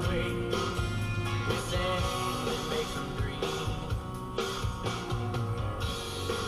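Rock music with guitar playing on the car radio.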